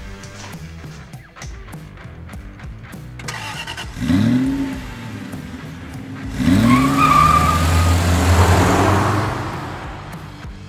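Music with a car engine sound effect: the engine revs up and falls back about four seconds in, revs again about six and a half seconds in, then runs on loudly with a rushing noise before fading near the end.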